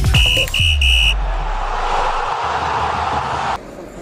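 Electronic channel-ident sting: three short high beeps, then a hissing noise over a low rumble that cuts off suddenly about three and a half seconds in, leaving a lower room background.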